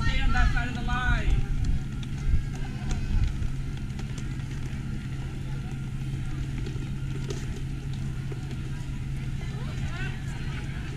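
Voices for about the first second, then a steady low hum under faint background murmur.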